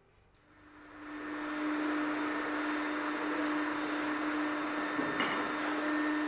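Vacuum cleaner running steadily, its hose drawn over a mosaic panel during restoration to lift loose grit from the stones. It fades in about a second in and holds a steady hum under a hiss, with a brief rattle near the end.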